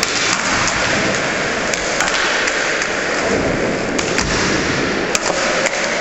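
Skateboard wheels rolling over a smooth concrete floor, a steady loud roar, broken by a few sharp clacks of the board.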